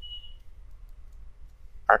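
A single short, high electronic beep lasting under half a second, over a faint low steady hum.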